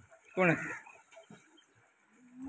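A single short, loud vocal call, about half a second long, a little after the start.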